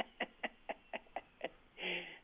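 A person laughing over a telephone line: a run of short, evenly spaced laughs, about four a second, fading away.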